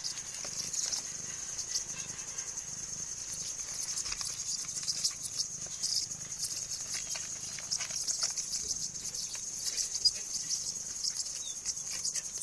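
Steady high-pitched chirring of crickets, with irregular rustling and light scuffling clicks as kittens pounce at a large beetle among straw and plastic.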